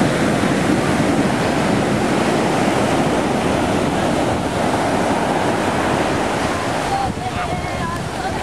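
Ocean surf breaking and washing up the beach: a steady rushing noise. A brief high voice comes in near the end.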